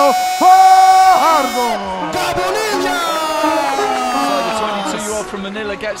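A voice drawing words out in long held notes that slide down in pitch near the middle, with crowd noise behind.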